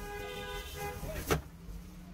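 A vehicle horn sounds one steady note for about a second over a low traffic rumble, followed by a single sharp knock.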